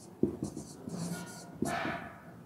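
Marker pen writing on a whiteboard as a word is written out: several short strokes, with a longer one near the end.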